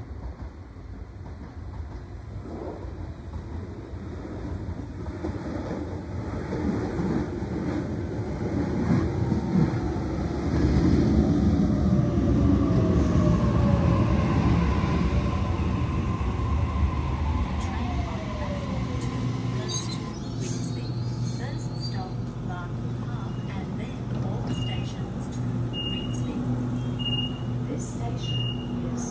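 A Sydney Trains double-deck electric train arriving and braking to a stop, its motor whine falling in pitch as it slows. Once it stands there is a steady low hum, and near the end four short high beeps about a second apart as the doors open.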